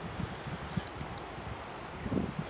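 Low wind rumble on the microphone with faint rustling, and a couple of faint clicks near the middle.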